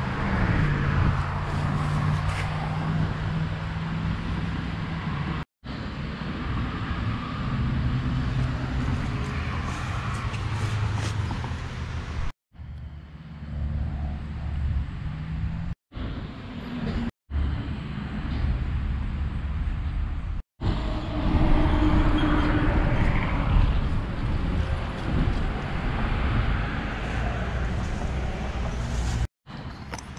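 Turbocharged Honda D16 four-cylinder engine running steadily, heard in several short clips joined by abrupt cuts.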